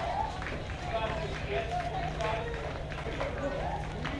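Indistinct distant voices of players and spectators chattering and calling out across the softball field, over a steady low rumble.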